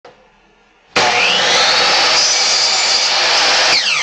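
An electric blower switches on about a second in and runs with a loud, steady rush of air, blowing wood shavings off the bench. Near the end it switches off and its motor whine falls in pitch as it spins down.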